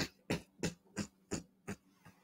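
A man's breathy laughter in short pulses, about three a second, growing fainter.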